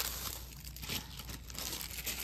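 Plastic packaging of craft items crinkling and rustling faintly as they are handled.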